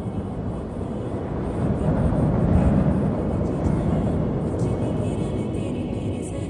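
A low, rumbling swell that rises to a peak about halfway through and then holds, laid in with the film's background music.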